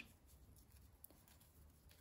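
Near silence, with faint soft rustling and a light tick about a second in from a crochet hook working paper yarn.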